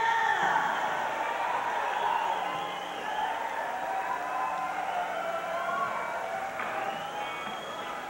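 Concert audience cheering and whooping as a song ends, a dense, continuous crowd roar.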